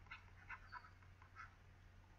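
Near silence: a low steady hum of room tone with a few faint, brief ticks.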